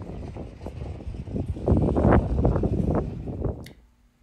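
Outdoor wind noise buffeting the microphone, a gusting low rumble that swells in the middle and cuts off abruptly just before the end.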